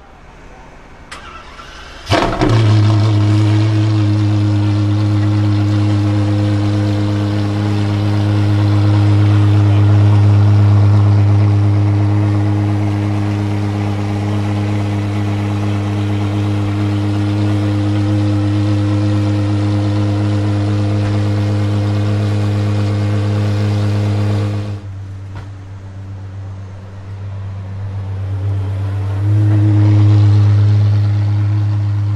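De Tomaso P72's engine starting: a small click, then it catches about two seconds in with a sharp burst and settles into a steady, deep idle. About 25 s in the sound drops away, and the engine comes back louder near the end.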